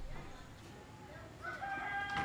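A rooster crowing faintly, one held call beginning about one and a half seconds in, over quiet outdoor ambience.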